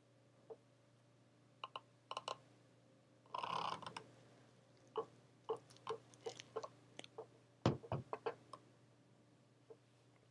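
Faint handling sounds of pressing fabric with a cordless iron on a wool pressing mat: scattered soft clicks and taps, a brief swish about three and a half seconds in, and a dull thump near eight seconds.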